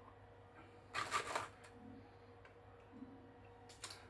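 Hornady 162-grain ELD Match bullets being handled: a quick cluster of light metallic clicks about a second in as bullets knock together in their cardboard box, then a faint tap near the end as one is set on the digital scale's pan.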